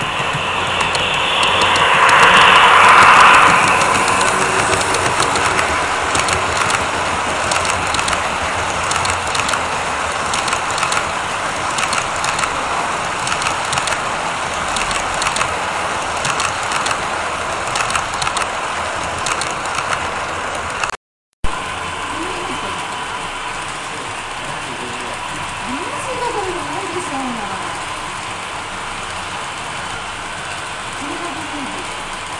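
HO-scale model passenger train running past close by, its wheels ticking rapidly over the rail joints with a steady running noise that swells loudest a couple of seconds in as the locomotive nears. The sound cuts out briefly about two-thirds of the way through.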